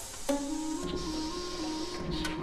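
Contemporary chamber music for seven instruments and electronics. A sharp attack comes about a quarter second in, then a low figure steps back and forth between two close pitches under a higher held tone.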